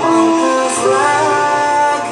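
Electronic keyboard playing sustained chords with a melody line that glides and wavers over them, the chords changing every half second or so.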